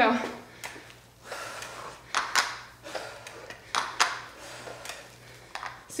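Two people doing kettlebell swings with adjustable dumbbells: short, sharp sounds of breath and handled weights, about one a second and sometimes in quick pairs, over a faint steady low hum.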